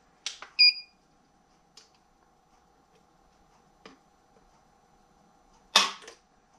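A digital trigger pull gauge gives a short beep just under a second in. Near the end, the unloaded Sig Sauer P365's trigger breaks with one loud, sharp dry-fire click of the striker as the gauge pulls it during a trigger-weight measurement.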